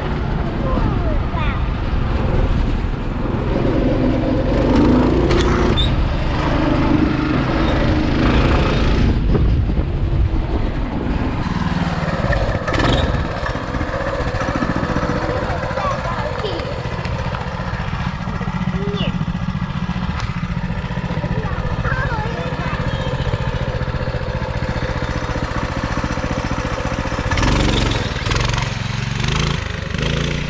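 A go-kart's engine running steadily while the kart is driven, with wind noise on the microphone and children's voices over it.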